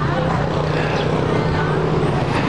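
Van engine running close by, a steady low hum.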